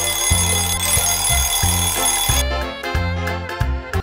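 Show jingle: an alarm-clock bell ringing over music with a bass line of short repeated notes. The ringing stops about two and a half seconds in, and the music carries on.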